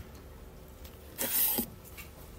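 Quiet room with a faint steady hum, broken a little past a second in by one short breath.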